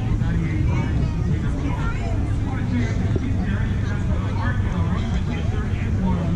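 Indistinct chatter of several people's voices, none clear enough to make out, over a steady low rumble.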